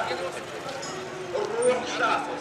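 Voices of passers-by and chatter in a busy street, with a short rising-and-falling call about one and a half seconds in.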